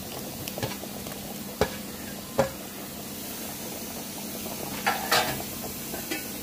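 A pan of gravy simmering with a steady sizzle while paneer cubes are tipped in from a steel bowl; a few sharp knocks of the steel bowl against the pan ring out in the first two and a half seconds, and a short clattering scrape comes near the end.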